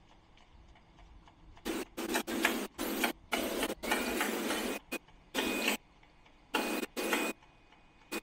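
Rotary cap compression moulding machine running, giving off a string of irregular short bursts of hissing noise, some lasting under half a second and one about a second long, which start a little over a second and a half in and stop shortly before the end.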